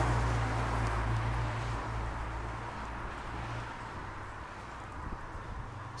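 Street traffic on a wet road: a low vehicle engine hum with a light hiss of tyres on wet tarmac, fading away over the first few seconds.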